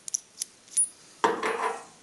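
Light metallic clicks as a shop-made steel expanding mandrel and its bolt are handled, then a louder sudden clunk a little past the middle as the mandrel is set down upright on the metal bench top.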